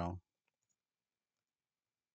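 The end of a spoken word, then a few faint computer keyboard key clicks, followed by near silence.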